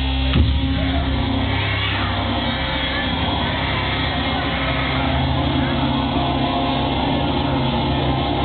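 Magic Pipe, a homemade steel-pipe bass instrument, playing sustained low bass drones; a sharp hit about half a second in, after which the bass moves to new notes.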